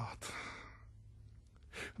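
A man's breathing in a pause between phrases: a soft exhale that fades away over the first half-second or so, then a short, sharp in-breath just before he speaks again.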